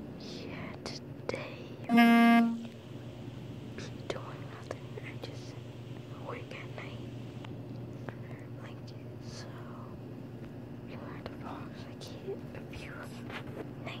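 Soft whispering over a steady low hum, broken about two seconds in by one loud, steady-pitched horn-like honk lasting about half a second.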